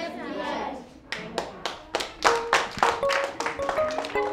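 Children's voices trailing off, then a run of hand claps about four a second, with plucked or mallet-struck music notes coming in around the middle.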